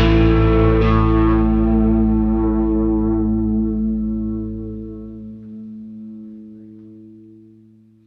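The final chord of a rock song on distorted electric guitar with effects, over a low bass note. It is struck at the start and again about a second in, then left to ring out, fading slowly away to silence.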